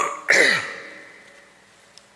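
A man clearing his throat with his fist to his mouth, close to the microphone. There is a short burst at the start, then a louder voiced "ahem" about a third of a second in whose pitch falls away.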